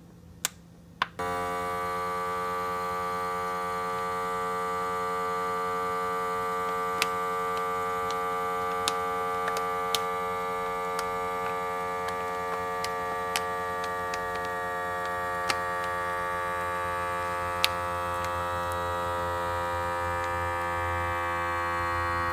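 Vacuum sealer's pump motor evacuating a bag of flour: two clicks, then from about a second in a steady electric hum with a few scattered ticks, its pitch creeping slightly upward near the end. It runs long because a lot of bag is left to empty.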